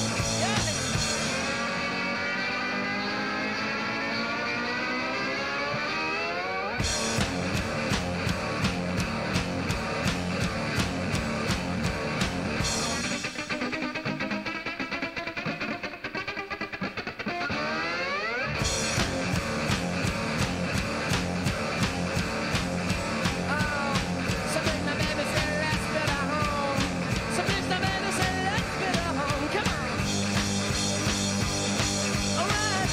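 Guitar-driven rock music. A rising sweep builds for several seconds and the full band with drums comes in about seven seconds in. The music thins out again in the middle, a second sweep rises, and the drums return near eighteen seconds.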